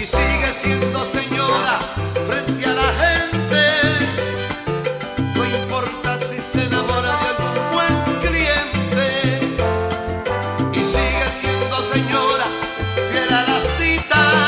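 Salsa music: an instrumental passage with no singing, over a bass line that moves in a steady, repeating rhythm.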